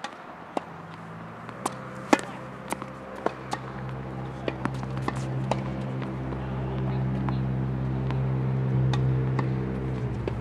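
Tennis balls popping off rackets and bouncing on a hard court, sharp single impacts spaced irregularly. Under them a steady low motor drone grows louder and stops abruptly near the end.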